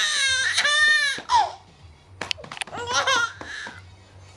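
Baby laughing: a loud run of high-pitched, squealing laughs lasting about a second and a half, then a shorter, quieter laugh about three seconds in.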